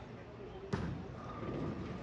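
A bowling ball landing on the lane at release with a single sharp thud about two thirds of a second in, over the steady chatter and noise of a busy bowling alley.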